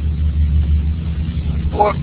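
Steady, loud low hum in the background of a screen-recording's narration track, weakening near the end just after a single spoken word.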